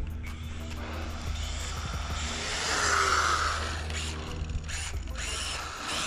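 Brushless RC car (1/12-scale Losi NASCAR with a Furitek brushless motor system) driving on asphalt at 70% throttle: motor whine and tyre hiss, swelling to their loudest about three seconds in.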